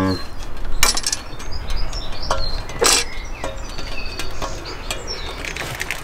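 Clicks and knocks of a car ECU and its metal holder being handled while the ECU's wiring connectors are plugged in. There are two sharper clicks, about one second and three seconds in.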